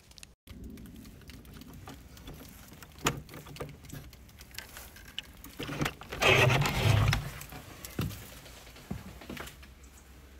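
Clicks and rattles of the lock and metal handle on an old wooden hut door being worked open, with a louder, longer rattle about six seconds in and a few more clicks near the end.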